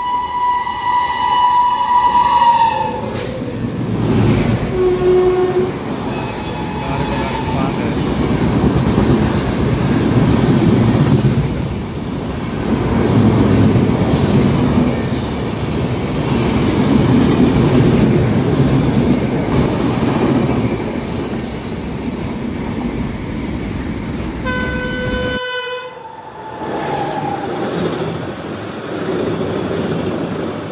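Rajdhani Express rushing through a station at speed. The locomotive's horn sounds for the first few seconds, its pitch dropping as the engine goes by. After that comes the steady rumble and wheel clatter of the coaches, swelling and easing as each coach passes.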